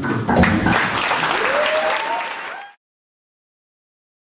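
An acoustic guitar's last strummed chord dies away as an audience breaks into applause with a whoop or two. The applause cuts off suddenly a little under three seconds in.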